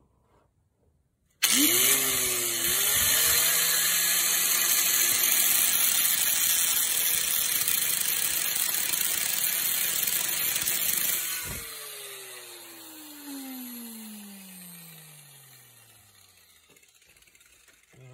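An angle grinder with an abrasive cutting wheel starts suddenly about a second and a half in, its motor whine rising, and cuts into a spark plug clamped in a vise with a loud, hissing grind for about ten seconds, the disc working against the plug's hard porcelain insulator. Then it is switched off and the motor winds down with a long, falling whine.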